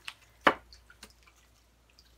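Oracle card deck being shuffled by hand: one sharp card snap about half a second in, then a few faint card clicks.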